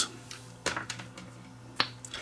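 Two sharp clicks, about a second apart, as the plastic parts of a multimeter's test leads are handled and pulled apart, over a faint steady hum.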